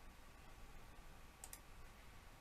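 Near silence of room tone, broken about one and a half seconds in by a computer mouse button clicking twice in quick succession.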